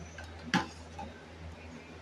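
Plastic water bottle being handled while a smaller bottle is taken out of it: one sharp plastic click about half a second in, then a faint tap about a second in.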